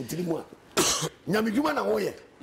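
A man coughs once, sharply, about a second in, between stretches of his own speech.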